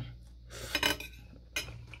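Metal spoon and fork clinking and scraping against a plate of noodles, with a cluster of clinks between about half a second and a second in and another clink near the end.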